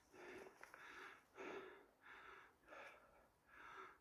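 Faint, heavy breathing of a hiker labouring up a steep rocky climb: about six breaths in a row, roughly one every half second to second.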